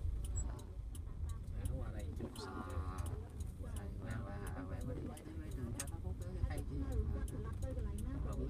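Inside a moving car: a steady low rumble from the engine and road, with a turn-signal flasher ticking about twice a second. Two drawn-out voice sounds come in the middle.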